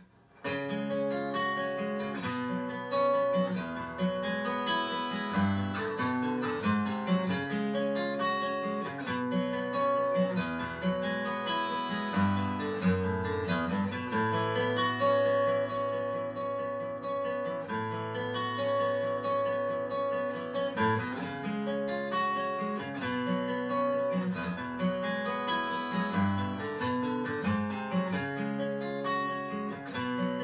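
Acoustic guitar playing an instrumental piece, starting about half a second in.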